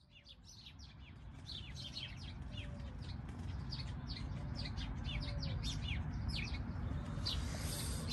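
Dawn birdsong: many birds chirping in short, quickly falling notes, fading in from silence over the first two seconds, over a low steady background hum.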